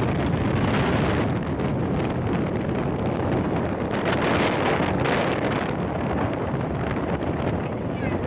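Moving passenger train heard at an open carriage window: a steady rush of running noise and wind, with wind buffeting the microphone.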